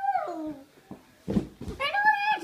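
A voice holding a long, high 'ooo' that slides down in pitch and ends just after the start. Then a short quiet with a soft knock and rustling, and a voice starting again near the end.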